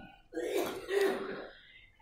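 A man clearing his throat in two short, soft rasps, one right after the other.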